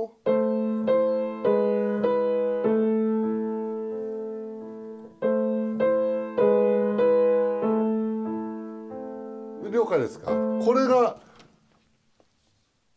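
Two pianos playing a slow, quiet A-minor children's piece in even quarter notes over a held low note, in two matching phrases, the second starting about five seconds in. One pianist plays the full passage while the other adds only the E notes. A voice is heard briefly near the end.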